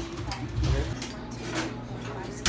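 Indistinct talking at a food counter, with a brief low thump about half a second in.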